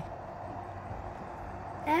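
Steady outdoor background noise with a faint low hum and no distinct events; a voice begins right at the end.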